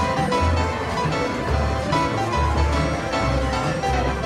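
Slot machine bonus music from a Buffalo Deluxe slot during its free games: a continuous tune over a pulsing bass line.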